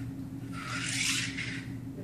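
A practice golf swing inside a tubular swing-plane trainer: a rubbing swish of the club and body moving against the frame, lasting about a second in the middle, over a steady low room hum.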